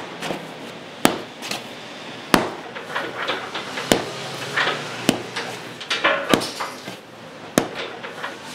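Bread dough being lifted and slapped down onto a floured wooden worktop, six sharp slaps about one every 1.2 seconds, as it is kneaded by hand to oxygenate it and develop the gluten.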